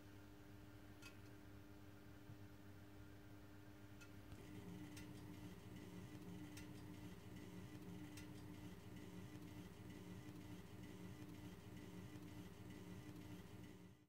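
Very faint gas burner of a Truma caravan heater; about four seconds in, its hum grows a little louder as the flame turns back up, with a few faint ticks.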